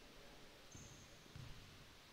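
Near silence: faint gym room tone, with two soft low thumps less than a second apart.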